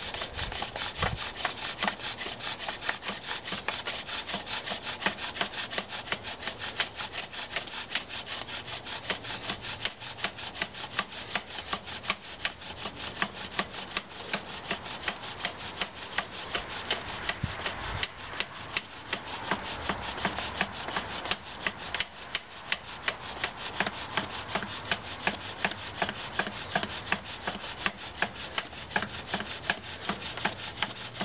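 Bow drill in use: a wooden spindle spun back and forth by a bow, grinding in the fireboard's hole to build a coal by friction. A steady rasping rub with a loudness peak about twice a second as the bow strokes reverse.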